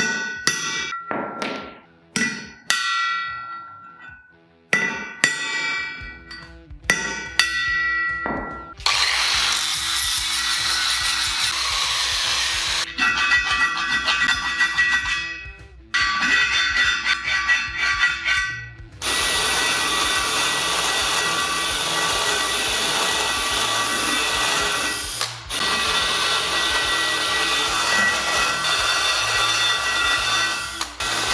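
A steel split-rim wheel struck about a dozen times, metal on metal, each strike leaving the rim ringing. Then a power tool cuts at the weld in a wheel-nut hole, running with brief stops, the rim ringing along with it as the chamfer is cleaned up.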